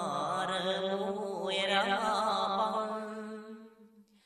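A solo male voice chanting a Khmer Buddhist sutta in smot style: one long, drawn-out phrase of held notes that bend and waver in pitch, trailing off just before the end.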